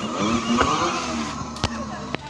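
Battery-powered children's ride-on toy car moving, its electric drive whining in pitch that rises and falls as it goes, with a sharp click about one and a half seconds in.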